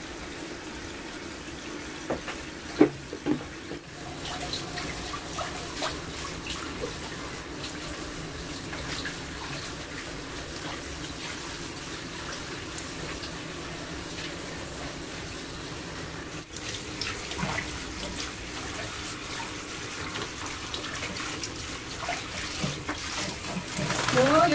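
Water running steadily from a handheld shower head into a plastic basin and over a small dog being bathed, with a few sharp knocks about two to three seconds in.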